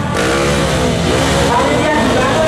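Trail motorcycle engine revving on a steep climb, its pitch dropping and rising again as the throttle is worked, with people shouting over it.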